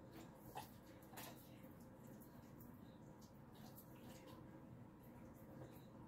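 Near silence, with a few faint, short wet clicks of dogs licking and chewing mango pieces taken from a hand. The clearest come about half a second and a second in.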